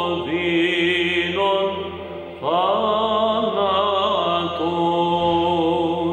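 Solo male cantor singing Greek Orthodox Byzantine chant in long melismatic phrases, holding notes with wavering ornaments over a steady low drone. The singing drops briefly about two seconds in and the next phrase begins.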